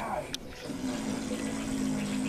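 Cartoon soundtrack from a television: a short falling sound and a sharp click, then a single steady held tone for about a second and a half.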